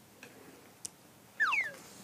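A short whistle-like tone sliding quickly downward about one and a half seconds in, preceded by a faint click; a comic sound effect added in the edit.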